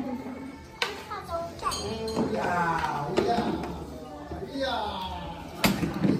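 Indistinct voices of several people talking over one another, with two sharp knocks, about a second in and near the end.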